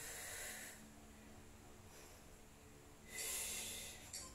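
Two short, quiet breaths from a woman exercising, about three seconds apart: breathing with the effort of bodyweight squats.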